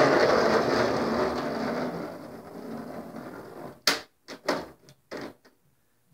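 A rushing noise that fades away over about three seconds. It is followed by a few sharp clicks and knocks of plastic and die-cast toy monster trucks being handled and set in place.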